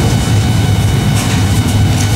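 A loud, steady low rumble with no speech over it.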